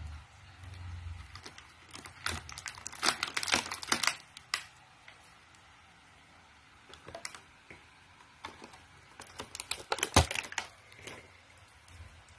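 Small pink plastic dollhouse furniture pieces being handled and set down, clicking and tapping against each other in two quick flurries, with a sharper knock as a piece is put down near the end.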